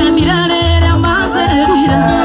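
Loud live music: a singer's voice sliding between notes over a backing track with long, heavy bass notes.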